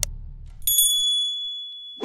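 Intro music fades out in the first moments, then a click and a single bright bell ding, a notification-bell sound effect, rings on with a high tone that fades over about a second.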